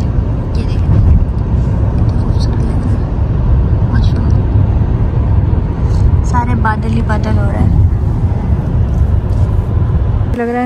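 Steady low rumble of road and wind noise from a moving car, heard from inside the cabin.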